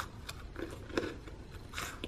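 A person biting into and chewing a crisp cream-filled biscuit, an imitation of Nutella Biscuits: a few short, quiet crunches spread over two seconds.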